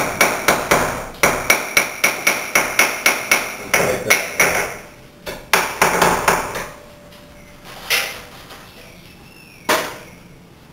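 Ball peen hammer tapping a cold chisel into the mortar and glass frame of a cracked glass block, with a ringing clink on each blow. A quick run of taps, about three a second, lasts some four seconds, then a few more come, then two single blows near the end.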